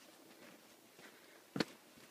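Faint footsteps on a dry, leaf-covered rocky trail, with one sharp knock about one and a half seconds in.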